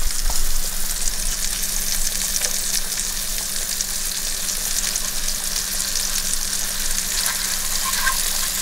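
Freshly cooked scrambled eggs and steak sizzling in a hot ceramic-coated frying pan as they are served out with a spatula: a steady hiss, with a few light scrapes just after the start, over a steady low hum.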